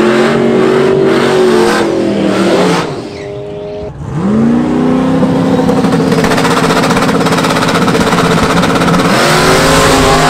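Drag-race Ford Mustang's engine revving hard through a burnout, easing off briefly about three seconds in. It then climbs back and holds at a steady high pitch, and rises again near the end as the car launches.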